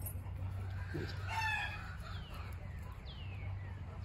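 Chickens in a yard: a rooster gives a short crow about a second in, followed by three short, falling whistled notes.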